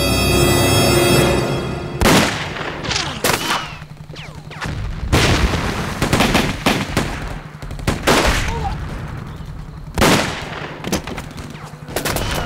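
Tense, ominous film score, broken from about two seconds in by a series of loud gunshots and booms, about six in all, each ringing out before the next, with the music droning on beneath.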